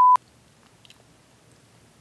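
A short, loud, steady electronic beep at the very start, cutting in and out sharply. Then faint chewing and mouth sounds in a quiet room.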